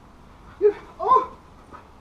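Giant schnoodle puppy giving two short, loud barks about half a second apart.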